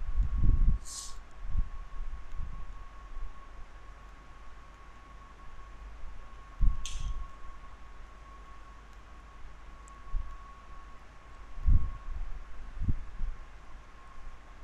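Stylus writing on a pen tablet, heard as scattered low thumps and knocks with two short high hisses, over a steady faint high whine.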